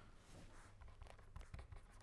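Faint, irregular scratching of a pen writing on paper, over a low steady hum.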